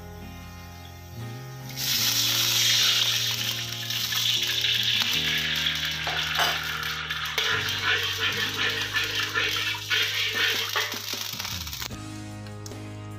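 Food sizzling in a hot pan, starting suddenly about two seconds in and slowly easing off toward the end, over background music.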